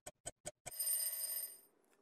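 Stopwatch ticking sound effect, about five ticks a second, ending about two-thirds of a second in with a bell ding that rings for about a second and fades.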